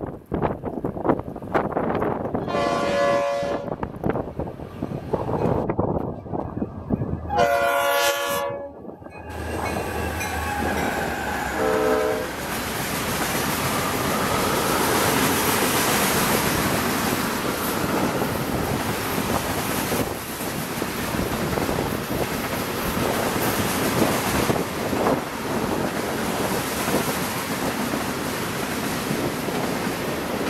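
Freight train led by two EMD GP40-2 diesel locomotives sounding its horn three times a few seconds in: two long blasts and a short one. The locomotives then pass, and loaded ethanol tank cars roll by with a steady clatter of wheels over the rail joints.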